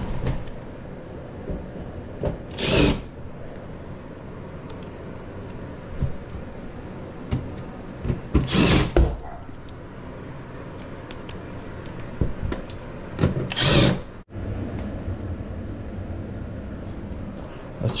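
Cordless Milwaukee impact driver running in three short bursts, a little over five seconds apart, driving in screws.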